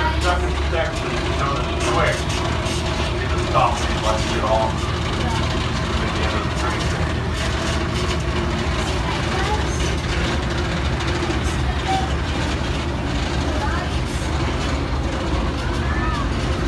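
Open-air park tram running steadily along, a constant low engine hum and road rumble, with faint passenger voices now and then.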